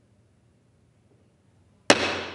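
Near silence in a large hall, then right at the end a single sharp wooden gavel strike that rings out and dies away in the chamber's reverberation.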